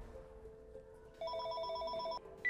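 Cordless telephone ringing: an electronic trilling ring of rapidly alternating tones, starting a little past the middle and lasting about a second.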